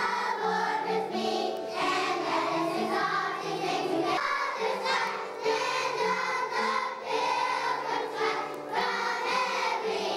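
Choir of kindergarten-age children singing a song together, continuously.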